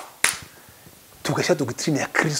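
Two sharp clicks about a quarter second apart, then a man talking in the second half.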